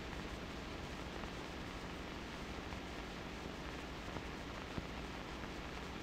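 Low, steady hiss of an old 16mm film soundtrack, with no distinct machine sound or other event.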